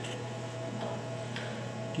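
A few faint metal clicks as a screw is fumbled into its thread on top of a lathe tailstock's locking pin, over a steady low hum.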